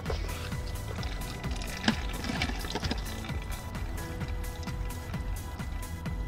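Background music with a steady beat, and one sharp click about two seconds in.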